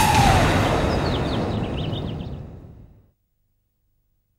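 A loud, noisy sound effect that ends the serial's background music, dying away over about three seconds and then giving way to complete silence.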